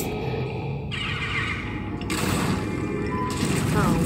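Film soundtrack playing: music with a noisy sound effect that grows brighter about two seconds in and drops back about a second later.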